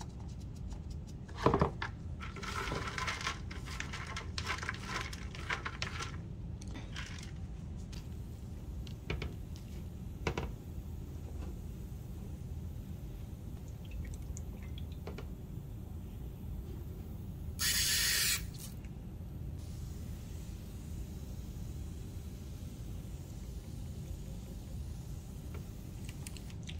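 A plastic trigger spray bottle sends one short hiss of water mist onto dry worm bedding about two-thirds of the way through. Earlier there is a single thump, then a few seconds of rustling as the bedding is handled.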